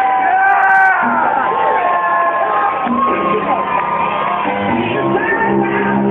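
Loud background music with a crowd shouting and whooping over it; the whoops are strongest in the first second.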